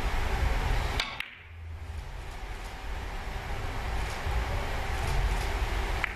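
A three-cushion carom billiards shot: a sharp click of the cue tip on the cue ball about a second in, then a few faint clicks of the balls meeting and touching the cushions, over a low hall hum.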